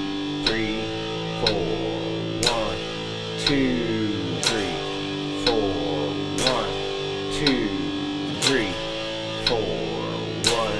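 Electric guitar playing power chords, picked and then slid up and down the neck into the next chord, at a slow even tempo of one beat a second. A metronome clicks on every beat.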